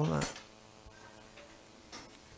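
A man's spoken word trailing off at the start, then quiet room tone with a faint steady hum and one or two faint clicks.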